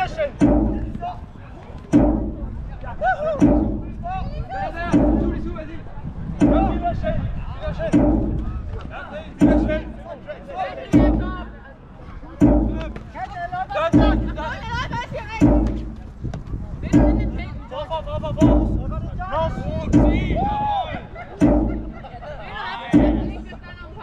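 Jugger timekeeping drum struck once every second and a half, steadily counting the game's stones, with players' shouts between the beats.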